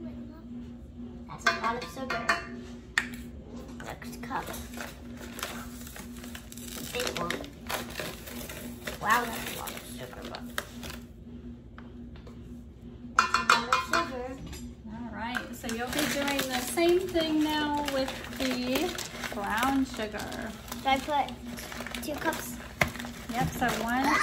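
Measuring cups clinking and scraping against a stainless steel mixing bowl and a paper sugar bag as granulated sugar is scooped and poured in, with the bag rustling. Many short knocks and clicks, busiest in the second half.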